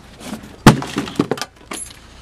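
A box of office belongings dropped to the floor: one sharp, loud crash with a breaking sound, followed by a few smaller clattering knocks as the contents scatter.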